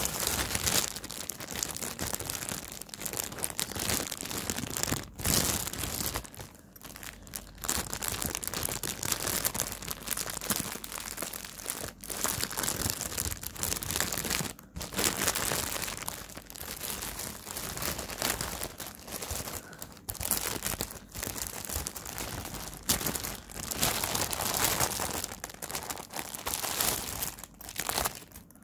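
Clear plastic bag being crinkled and squeezed by hand right at the microphone: an irregular run of crackling broken by a few brief pauses.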